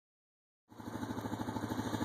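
Honda ATV engine idling in neutral with an even, rapid pulsing beat, starting about two-thirds of a second in.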